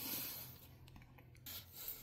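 Faint, brief rubbing of paper sheets being handled on a desk, fading to near silence.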